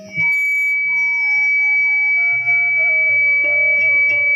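Bamboo flute (bansuri) and harmonium playing a slow folk melody, the notes stepping downward one by one over low held bass notes, with one steady high tone held throughout.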